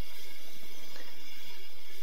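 Quiet room tone with a faint steady hum and a few soft, faint ticks as the bandsaw's upper wheel is turned slowly by hand to check the blade's tracking.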